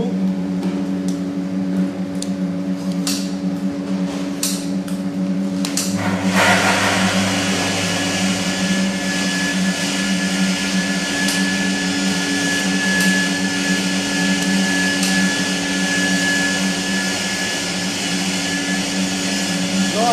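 Food-processing machinery in a tofu plant running with a steady low hum. About six seconds in, a louder rushing noise comes in, and a high steady whine joins it shortly after.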